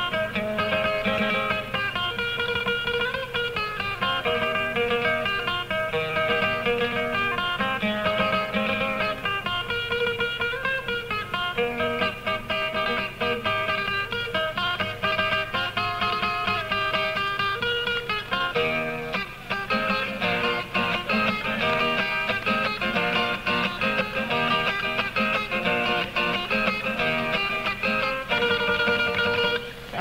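Guitar playing a Panamanian décima torrente instrumentally: a plucked melody over a steady bass, with no singing.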